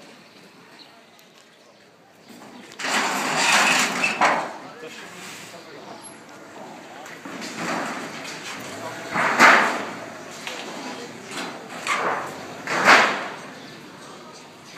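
Men's voices, loud in three spells of calling out, over low street background.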